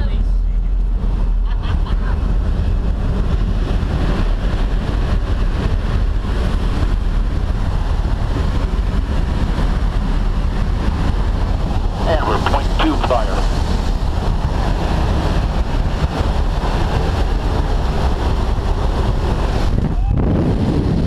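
Wind roaring through the open door of a jump plane in flight, over the steady drone of the aircraft's engine. A voice shouts briefly about twelve seconds in.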